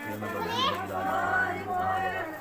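Indistinct voices of adults and children talking over one another, with a steady low hum underneath.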